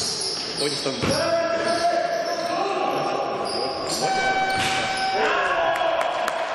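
Sounds of an indoor basketball game in an echoing gymnasium: a ball dribbling on the gym floor, sneakers squeaking as players cut and stop, and players calling out to each other.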